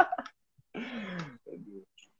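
A man laughing: one breathy, drawn-out laugh about a second in, falling in pitch, then a short chuckle.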